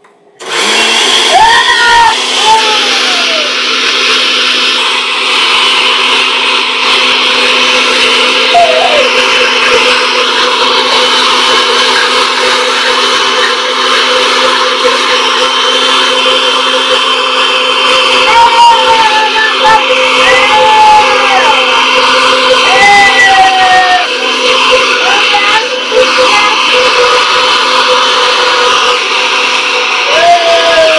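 Countertop glass-jar blender running on its high setting, blending walnuts and water into walnut milk. It starts abruptly about half a second in and then runs loud and steady.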